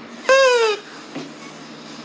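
A child's short high-pitched squeal, about half a second long, sliding down in pitch.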